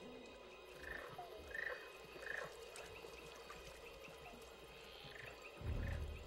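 Quiet film-score music with a night-time animal ambience: short calls come a few times over it. A deep rumble swells up near the end.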